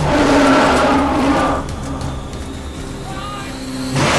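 A loud screeching cry from a horror-film sound mix, lasting about a second and a half, then dropping to a quieter steady drone.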